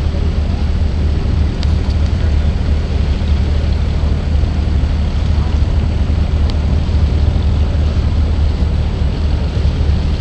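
Engine of a small wooden water-taxi boat running steadily under way, a constant low drone with the rush of water and wind over it.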